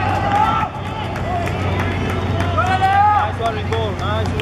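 Spectators shouting and cheering runners on, high raised voices rising and falling in pitch, with scattered sharp clicks among them and a steady low hum beneath.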